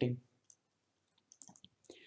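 Faint, scattered light clicks and taps from a stylus on a tablet as a word is handwritten, after the tail of a spoken word. The clicks fall at about half a second in and again in a small cluster near the end.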